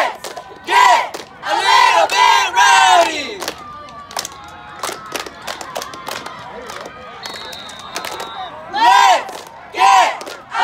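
A cheerleading squad shouting a cheer in unison, in loud bursts near the start and again near the end, with sharp claps in the quieter stretch between. A thin steady high tone sounds for about a second late on.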